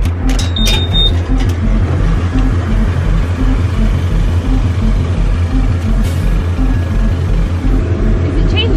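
Coin-operated forecourt tyre inflator's air compressor running with a steady low pulsing throb while the hose is held on a car tyre valve. A short high beep sounds from the machine about half a second in, with a few clicks near the start.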